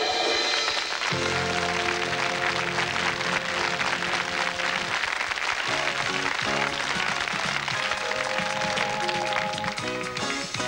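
Studio band playing stage-act music in long held chords that change a few times, over audience applause.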